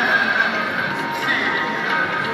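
Sikh hymn singing (Gurbani kirtan) with music: a wavering sung voice over steady held tones.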